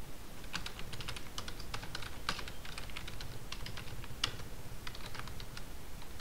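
Typing on a computer keyboard: an irregular run of key clicks that starts about half a second in.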